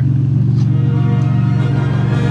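A car engine idling steadily, a low even rumble, while orchestral background music fades in over it.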